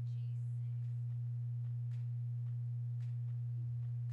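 A loud, steady low hum at one unchanging pitch, with fainter steady overtones above it and no rise or fall. It drowns out the race, leaving only a few faint clicks audible.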